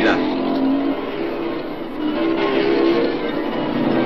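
Engines of a pack of motocross motorcycles racing, a dense steady sound, mixed with background music.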